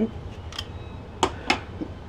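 Purple nitrile glove being pulled off a hand, with a few short, light snaps.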